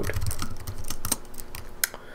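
Typing on a computer keyboard: a quick, irregular run of key clicks as a short word and closing brackets are typed.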